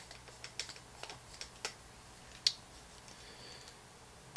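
Light, scattered clicks and ticks of a hex screwdriver and small steel screws working against carbon-fibre frame plates as the frame screws are driven. There are about ten in the first two and a half seconds, the sharpest one about two and a half seconds in.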